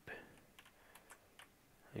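A few faint, short clicks from a computer's keys or mouse buttons over near-silent room tone.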